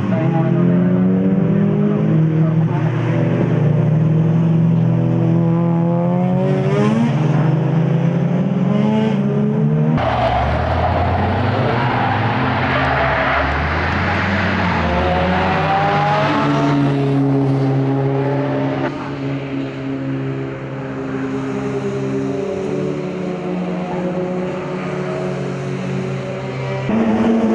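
Mazda FD3S RX-7's rotary engine at racing speed on track, its note climbing through the revs and dropping at gear changes. About ten seconds in the sound changes abruptly and gets noisier, and it is a little quieter in the last third.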